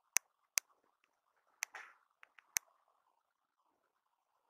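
A quiet room broken by about six short, sharp clicks spread over the first two and a half seconds, then quiet; handling clicks from a small handheld device.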